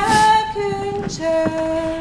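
A woman singing unaccompanied in slow, long-held notes, stepping down in pitch with a short break about halfway through.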